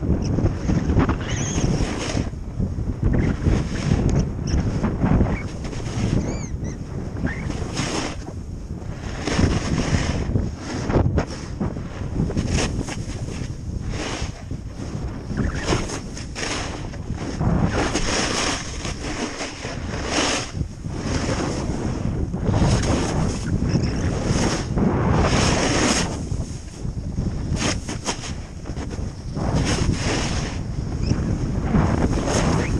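Wind buffeting the microphone during a fast downhill run on snow, with the hiss and scrape of edges on the snow coming in repeated surges as the rider turns.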